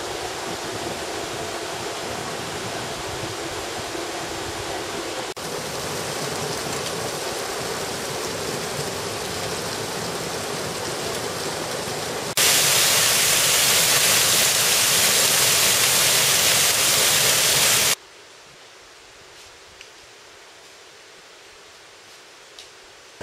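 Running water, a steady rushing noise heard across a few cuts: moderate at first, much louder for about five seconds from the middle on, then faint near the end.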